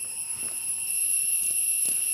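A steady, high-pitched ringing drone of several tones at once, with two brief knocks: one about half a second in and one near the end.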